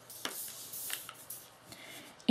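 Faint handling sounds as a marker is swapped and the card is held: a few soft clicks and light rustling of paper.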